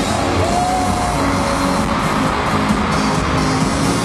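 Loud live concert music filling a large arena, recorded from among the audience, with a few held tones drifting gently in pitch.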